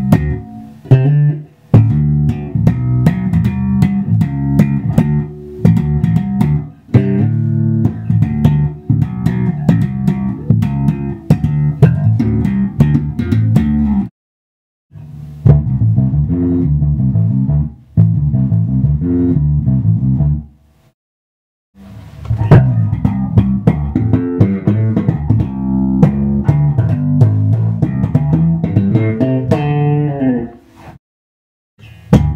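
Washburn Mercury MB-4 electric bass played through a Trace Elliot Commando 100 W bass amp, a busy line of notes with sharp percussive attacks. The playing stops briefly twice, a little before halfway and again about two-thirds of the way in. The amp's Bright switch is on, and a Boss LM-2 limiter pedal is switched into the signal chain.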